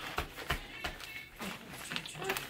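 Several scattered taps and thumps as hands and feet land on a plastic Twister mat over carpet, with faint voices under them.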